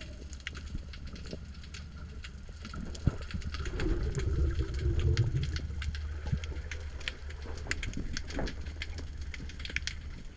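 Underwater sound recorded through a camera's waterproof housing: a steady low rumble of moving water with many small scattered clicks and crackles, swelling louder for a second or two about four seconds in.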